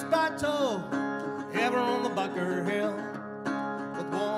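A resonator guitar played in a country tune, with the player's voice at the microphone sliding up and down in pitch.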